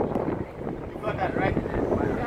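Indistinct voices in the background, with wind buffeting the microphone throughout.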